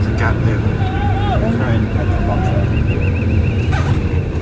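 Car engine and road rumble heard from inside the car's cabin while driving, with voices from the street outside. A high warbling tone runs through the middle.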